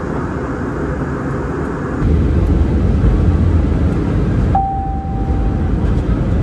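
Airbus A320 cabin noise on descent: steady rumble of engines and airflow heard by the window, heavier and deeper after about two seconds. Near the end a single steady tone sounds for about a second.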